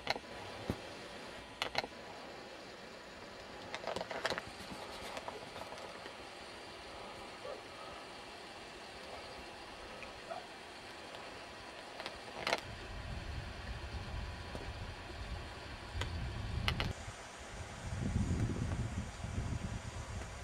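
Handheld camcorder handling noise outdoors: scattered sharp clicks and knocks over a steady hiss. A low, uneven rumble joins in for the last third.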